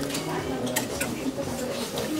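A handbag being handled, with a few small clicks from its metal clasp and fittings, over faint background voices.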